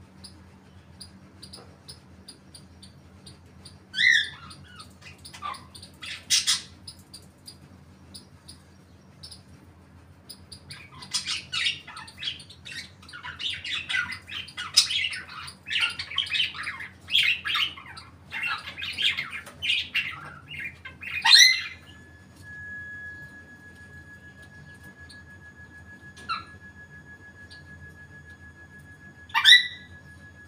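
Pet parrots, an African grey among them, squawking and chattering: a sharp call about four seconds in, a long run of rapid chattering calls in the middle that ends in a loud squawk, and another loud squawk near the end.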